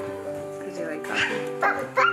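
Bernedoodle puppy yipping twice in the second half, short high calls, over steady background music.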